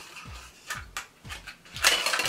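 Clicks and clinks of thin tinplate as an opened perfume can and the protective packing inside it are handled, with the loudest clink near the end. Background music with a steady beat plays underneath.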